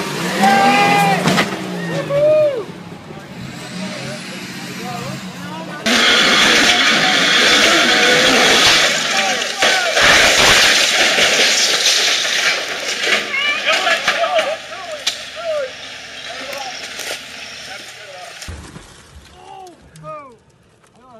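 Off-road vehicle noise with people exclaiming. About six seconds in, a loud, steady rushing noise starts abruptly and runs on until it drops away shortly before the end.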